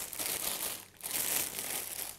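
Plastic packaging of a bag of green beans crinkling as it is handled, in two spells with a brief pause about halfway.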